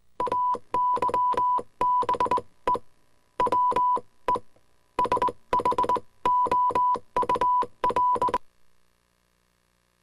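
Electronic keyboard-like beeps, short notes in quick, irregular clusters, a sound effect for a TV caption card. They stop about eight and a half seconds in, leaving near silence.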